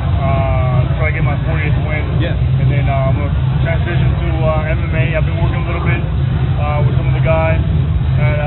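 A person talking over a loud, steady low hum.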